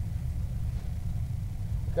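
Steady low rumble of an engine running at idle, without change.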